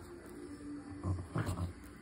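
A dog growling in three short bursts, starting about a second in: low play growls while it tugs on a plush toy.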